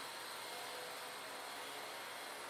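Faint, steady background hiss: room tone, with no other sound.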